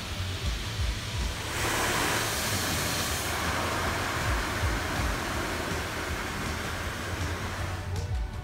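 Automatic car wash water jets spraying onto the car, heard from inside the cabin as a steady rushing hiss that grows much louder about a second and a half in.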